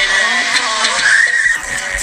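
Young men yelling in a high, wavering shriek, the pitch climbing about halfway through.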